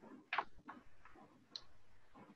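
A few faint clicks in a quiet pause: a sharper one about a third of a second in, a weaker one just after, and a short high tick about a second and a half in.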